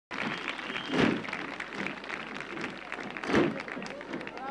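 Audience applauding, a dense patter of clapping, with two louder bursts of sound standing out, about a second in and near the end.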